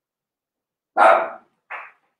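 A dog barking twice: a loud short bark about a second in, then a shorter, quieter one near the end.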